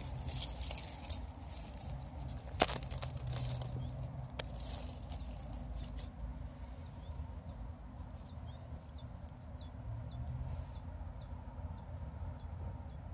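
Tomato foliage rustling and clicking as a hand parts the stems, with small birds chirping repeatedly in the background from about halfway through.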